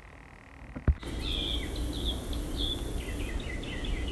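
A sharp click about a second in, then a steady low rumble and hiss of workshop background with short, high chirping notes repeating over it.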